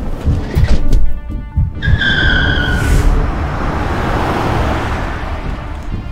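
Car tyres squealing as the car pulls away hard: one slightly falling squeal about two seconds in, lasting about a second, then a steady rushing noise. Trailer music with heavy low beats plays underneath.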